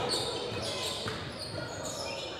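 Quiet game sound of a basketball game in a gym: indistinct voices of players and spectators, with a basketball bouncing on the hardwood court.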